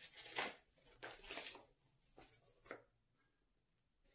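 Paper and thin card rustling and sliding in the hands as a sticker packet and a folded paper card are handled: a few quick rustles in the first second and a half, then two light taps, dying away in the last second.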